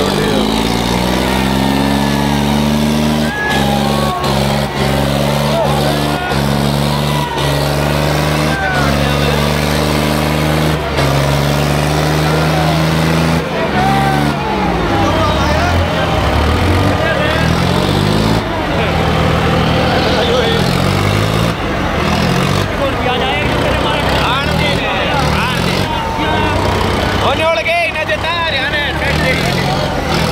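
A John Deere tractor's diesel engine revs up over about two seconds and is held at high revs under heavy load in a tug-of-war pull. From about halfway through, the revs surge up and down repeatedly. A crowd shouts over it.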